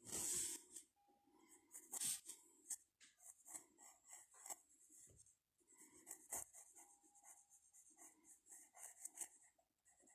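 Pencil lead scratching on paper in light sketching strokes, faint and in short irregular runs with a brief pause about halfway through.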